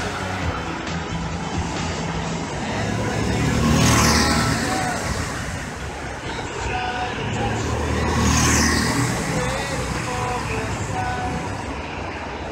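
Go-kart engines running on the track, swelling as karts pass close and fading again, twice: about four seconds in and again about eight and a half seconds in, each pass with a sliding change in pitch.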